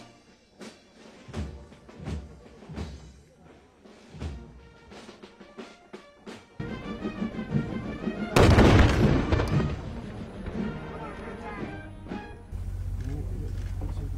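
Military parade band music: sharp, irregular drum-like beats for the first six seconds, then the band playing. About eight seconds in, a loud blast drowns everything for over a second. A steady low hum takes over near the end.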